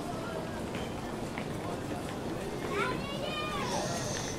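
Indistinct voices over the steady background hum of a large station hall, with one voice rising and falling more clearly about three seconds in.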